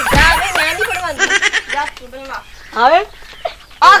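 People talking excitedly, with short rising vocal calls in the second half.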